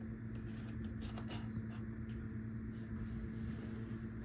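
A steady low hum with a few faint, light clicks and rustles of handling over it.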